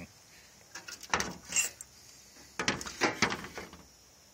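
Rusted sheet-metal pieces cut from a car's door jamb scraping and clinking as they are handled and shifted, in two short bouts about a second apart.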